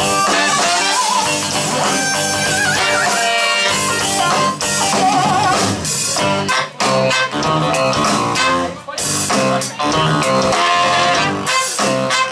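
A live band plays an instrumental number: a horn section of baritone saxophone, trumpet and saxophone over electric guitar, keyboard and drums. The first half has held, wavering horn lines, and about halfway through the music turns to short, punchy hits with brief breaks between them.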